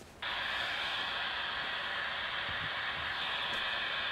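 Steady static-like hiss played through a smartphone speaker. It switches on abruptly just after the start. It is the spirit-board app's sound while it waits for the next letter to be spelled.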